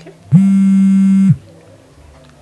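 Mobile phone ringing for an incoming call: one loud, steady buzzing tone about a second long, starting a moment in, part of a repeating ring.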